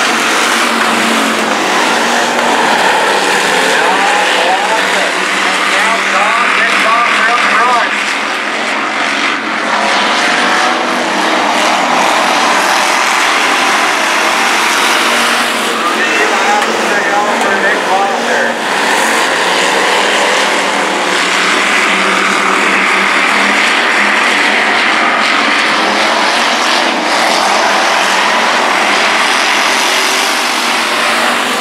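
A pack of dirt-track hobby stock race cars lapping at racing speed, several engines running together, their pitch rising and falling as they power through the turns and down the straights.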